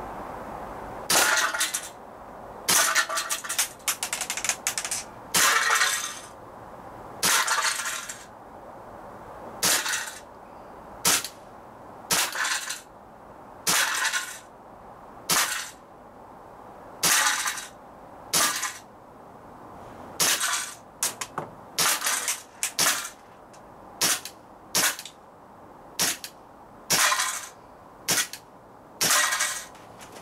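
Umarex P08 Luger CO2 blowback BB pistol firing about twenty shots, one every second or so, each a sharp crack with a brief ring after it. The CO2 gas pressure is low from the freezing cold.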